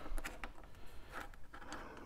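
Faint light taps and scrapes of plastic Milwaukee Inkzall marker barrels being moved and set down on a hard work surface, a few scattered ticks.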